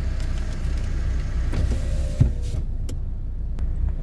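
Steady low rumble of a car idling in traffic, heard from inside the car. About two seconds in there is a brief whine and a thump, after which the hiss of outside noise drops away.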